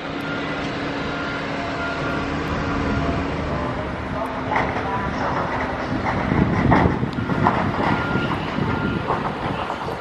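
A train running along the station tracks, with a continuous rumble and rattle that grows louder about six to seven seconds in.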